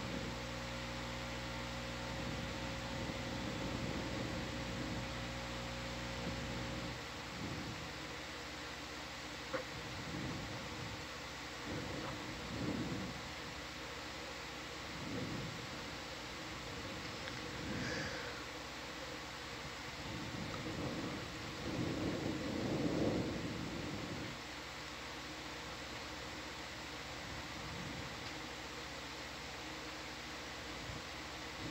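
Steady equipment hum and hiss in the ship's ROV control room. A low hum of several steady tones stops about seven seconds in, leaving even hiss with a few soft, muffled low swells.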